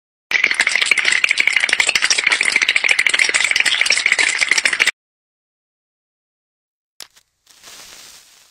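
A loud, rapid rattling sound effect, a dense stream of fast clicks lasting about four and a half seconds and stopping abruptly. A faint hiss starts near the end.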